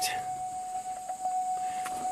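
Key-on chime from a Cadillac Escalade EXT, played through the speaker of an aftermarket Tesla-style touchscreen head unit: one steady, held musical tone that sounds a little off.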